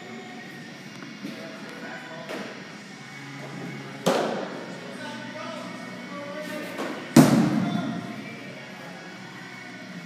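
Two sharp baseball impacts ringing through a large indoor hall, about three seconds apart, the second louder, over faint background music and chatter.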